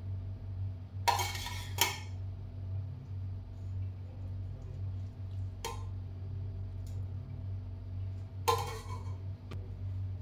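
Metal spoon clinking against a ceramic plate and bowl while ingredients are spooned out: two sharp clinks about a second in, then single clinks later, over a steady low hum.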